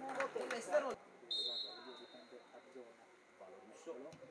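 Voices for about a second, then a referee's whistle sounds once, a single steady high blast of about a second, over faint background voices.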